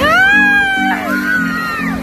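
A song playing: a pulsing low accompaniment under a high voice that glides up into a long held note, falls away after about a second, then holds a second note.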